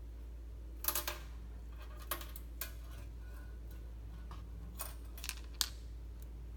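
A handful of short clicks and rustles from fingers handling a small baitfish and fishing line, the sharpest about a second in and near the end, over a steady low hum.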